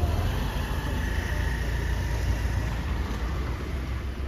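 Steady low road rumble inside a car cabin as the taxi drives slowly along.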